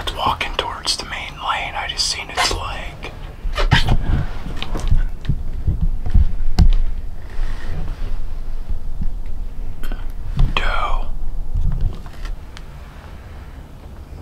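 Two people whispering, with soft knocks and thumps between about four and seven seconds in, over a low steady rumble.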